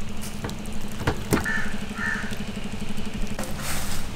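An engine running steadily in the background, a low, evenly pulsing hum, with two sharp knocks a little after a second in.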